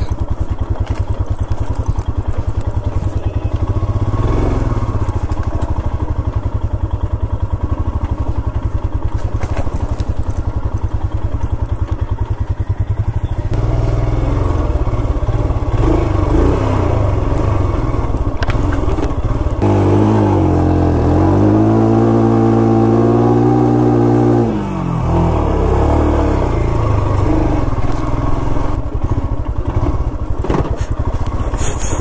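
Motorcycle engine chugging at low revs as the bike rolls slowly along a dirt trail, growing louder about halfway through. A few seconds later the revs rise and hold, then drop away when the throttle is closed.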